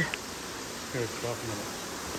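Steady, even hiss of an indoor exhibit hall's ambience, with a soft voice briefly about a second in.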